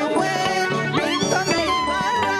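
Live church praise music: women singing into microphones over instrumental backing with a regular bass pulse, one voice sliding up and down in pitch about halfway through.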